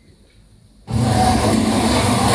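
A band's amplified noise music cuts in abruptly about a second in, after a quiet opening: a loud, dense wall of distorted sound over a steady low drone.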